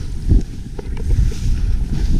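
Wind buffeting an action camera's microphone during a fast powder-ski descent, a heavy low rumble, with a few short scrapes of skis cutting through the snow.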